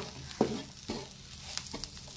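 Spatula stirring and scraping onion, grated coconut and spice powder around a non-stick frying pan, with irregular scrapes, the sharpest about half a second in, over a light sizzle of frying.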